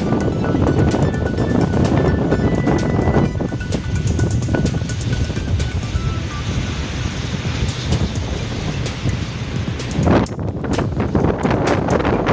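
Wind buffeting a phone's microphone on the open deck of a moving ship: a loud, steady rumble with gusting knocks, and faint music underneath in the first half.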